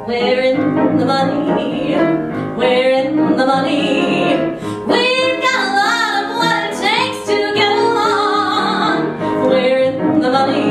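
A woman singing a show tune with piano accompaniment, holding a note with vibrato about halfway through.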